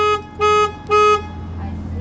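Car alarm sounding the horn in short, evenly spaced honks, about two a second, stopping a little over a second in.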